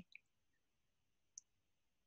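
Near silence: room tone in a pause in speech, with two faint brief clicks, one just after the start and one a little past the middle.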